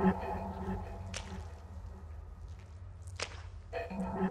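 Dark ambient horror soundtrack: a steady low drone under a ringing, metallic cluster of tones that swells and fades away, returning near the end. Two sharp, whip-like swishes cut through about a second in and again after three seconds.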